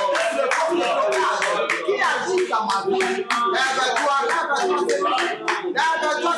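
Hand claps at an irregular, quick pace over voices praying aloud.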